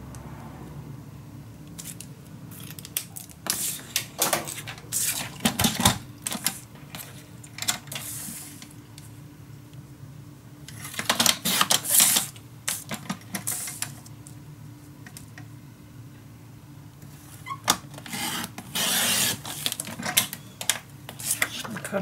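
Sliding paper trimmer cutting patterned paper, several short hissing strokes of the blade carriage along its track, mixed with clicks and rustles of card being handled and positioned on the trimmer.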